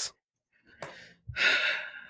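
A person sighing before answering a question: a brief breath in, then a breathy exhale lasting under a second, starting a little past a second in.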